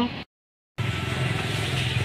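A motor running with a steady low rumble, cutting in abruptly about three-quarters of a second in after a moment of dead silence.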